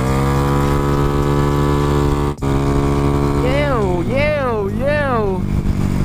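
A man singing while riding: a long held note, then a warbling run that rises and falls three times. Underneath, a Yamaha Mio Sporty scooter's engine runs steadily.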